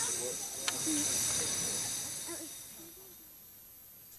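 Steam hissing from a small steam locomotive, with faint voices beneath, fading away about two and a half seconds in.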